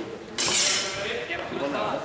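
Steel training longswords clashing once about half a second in: a sharp metallic clang that rings and fades over about a second.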